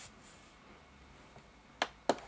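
Mostly quiet, then a single sharp click near the end as a hand presses a button on a digital alarm clock.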